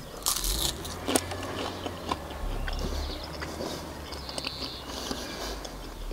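A bite into a crisp baked puff pastry stick, crunching about half a second in, followed by quiet chewing with faint crackles.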